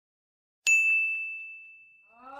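A single bright bell ding, struck about two-thirds of a second in, ringing on one clear high note and fading slowly.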